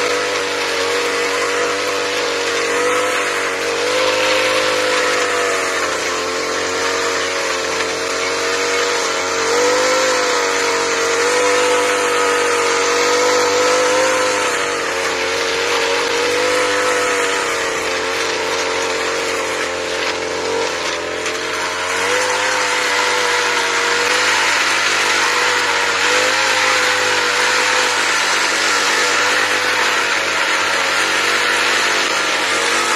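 Petrol brush cutter fitted with a cultivator attachment, its engine running at high revs while the rotating tines dig into dry soil. The engine pitch wavers slightly under the load and dips briefly about two-thirds of the way through before picking up again.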